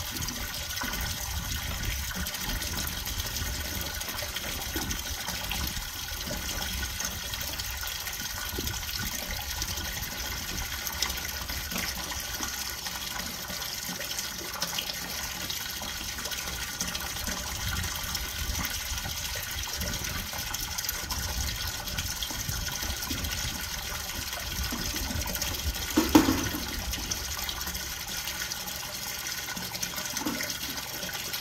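Water from a hose pouring steadily into a partly filled stock tank, splashing into the water. Near the end comes one brief, louder sound over the running water.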